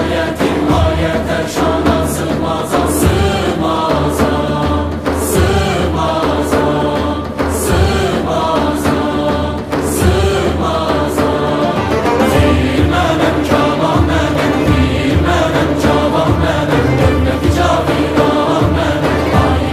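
Traditional Azerbaijani orchestra and choir performing. Frame drums beat over plucked long-necked lutes and ouds, with sustained wind and choral lines above a steady bass.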